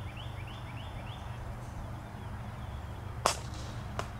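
A single sharp crack of a cricket bat striking the ball, a little over three seconds in. Before it, a bird repeats a short rising chirp about three times a second for the first second or so, over a steady low outdoor rumble.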